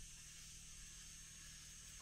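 Near silence: faint steady outdoor background hiss.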